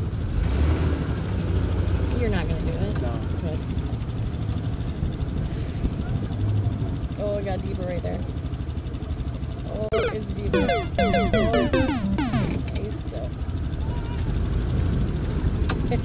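Off-road Jeep engine idling with a steady low rumble, with distant voices over it and a brief cluster of falling tones about ten seconds in.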